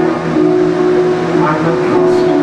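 Electric guitar played through an amplifier: held, ringing notes that change pitch a couple of times.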